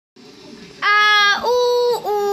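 A child wailing: two long, steady, high-pitched cries starting about a second in, the second a little higher than the first.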